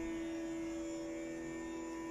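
Steady accompanying drone holding one pitch with a stack of overtones, heard alone in a pause between bansuri phrases.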